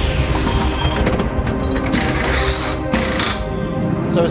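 Music with rapid rattling bursts of pneumatic wheel guns at a race-car pit stop; the two loudest bursts come about two and three seconds in.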